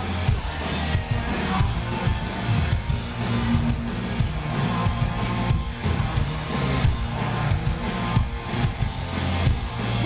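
Punk rock band playing live, with electric guitars and drums loud throughout and no singing.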